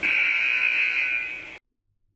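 Countdown timer's time-up buzzer sound effect: one loud buzz about a second and a half long that cuts off suddenly, signalling that the answer time has run out.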